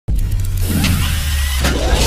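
Cinematic logo-intro sound effects: a deep steady rumble under a rushing hiss, with whooshes and a short rising swish about a second and a half in.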